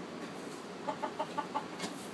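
Hens clucking: a quick run of about six short clucks, roughly five a second, about halfway through, followed by a sharp click near the end.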